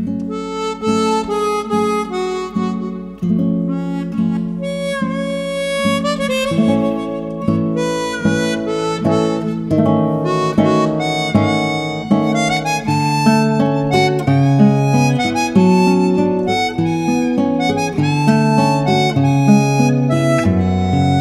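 Harmonica and nylon-string classical guitar playing a tango duet. Both come in together with a sudden loud attack at the start, and the harmonica carries the melody with some bent notes over the guitar's plucked accompaniment.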